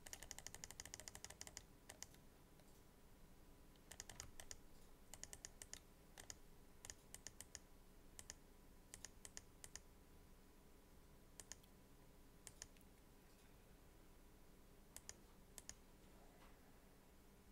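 Faint computer keyboard keystrokes: a quick run of about ten clicks a second for the first second and a half, then scattered small clusters of key presses.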